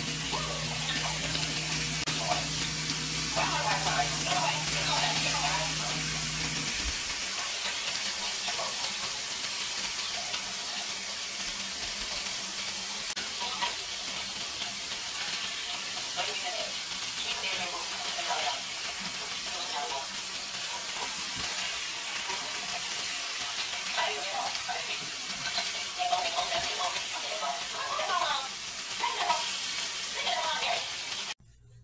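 Flour-dredged cube steaks frying in hot canola oil in a skillet, a steady sizzle as they brown.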